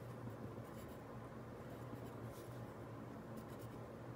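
Faint scratching of handwriting on lined notebook paper, in short irregular strokes.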